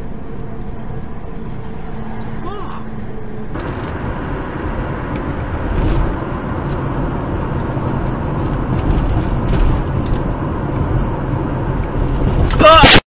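In-vehicle dashcam audio of steady engine and road drone at highway speed, with faint regular high clicks. About a third of the way in it cuts to louder road and engine noise of a car driving.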